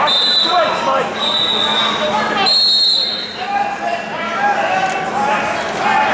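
Three short, high whistle blasts in the first three seconds, over the steady chatter of a crowd in a gymnasium.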